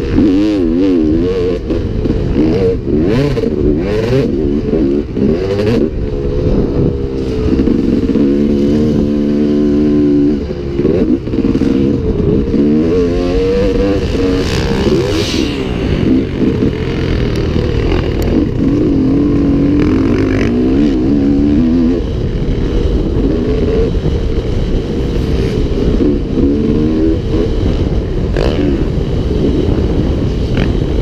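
2002 Honda CR250R two-stroke dirt bike engine heard from onboard while it is ridden, revving up and falling off again and again as the throttle is worked through the corners and straights, with scattered knocks from the ride.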